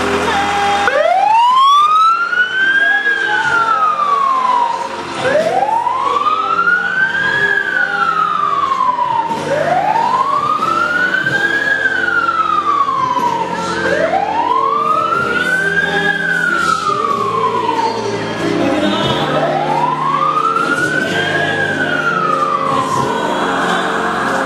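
Fire truck siren wailing: five long cycles, each rising for about two seconds and falling for about two seconds, starting about a second in.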